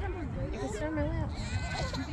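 Indistinct voices of several people talking and calling out over one another, with a steady low rumble underneath.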